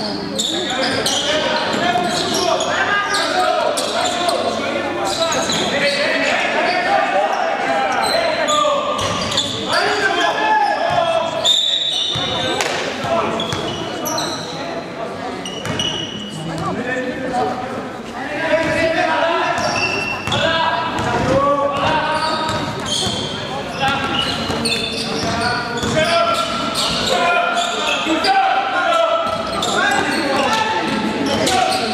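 The sounds of an indoor basketball game: a basketball bouncing on the court over steady shouting and chatter from players and spectators. It all rings out in a large gymnasium.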